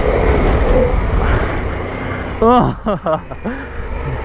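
Harley-Davidson Pan America 1250's V-twin engine running as the motorcycle is ridden on a dirt track, with steady wind noise over it. The rider laughs about two and a half seconds in.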